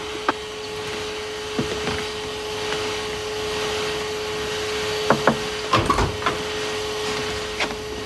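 A canister vacuum cleaner runs steadily with a constant hum. A few short knocks and a thump sound over it about five to six seconds in.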